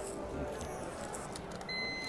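Background noise of a boarding gate, then near the end one short high beep from the gate's boarding-pass scanner as a pass is scanned.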